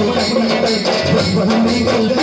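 Live devotional bhajan: a melody sung over drums and jingling percussion, with a steady beat.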